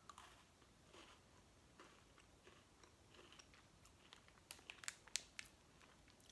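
Faint crunching and chewing of a chocolate-coated Mikado biscuit stick being bitten and eaten, with a few sharper crunches about four and a half to five and a half seconds in.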